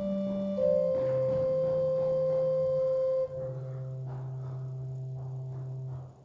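Organ playing slow, held chords. The chord changes about half a second in and again about three seconds in, softer from there, and breaks off at the end.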